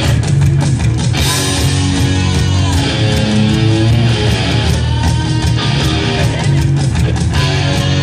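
Punk rock band playing live with loud electric guitars, heard over the concert PA from among the audience.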